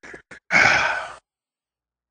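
A man's heavy sigh: one breathy exhale lasting under a second, fading out.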